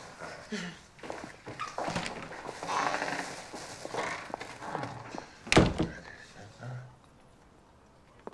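Footsteps and clothing rustle on a tiled hallway floor, with one loud, sharp thunk about five and a half seconds in.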